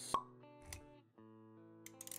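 Quiet intro music of held, plucked-sounding notes, with a sharp pop sound effect just after the start and a low thud before the first second is out.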